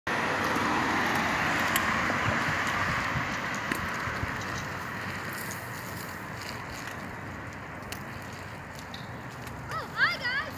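Small child's bicycle rolling along a concrete sidewalk: a steady hiss of tyres on concrete that slowly fades as the bike pulls away, with a few light clicks. A child's voice starts just before the end.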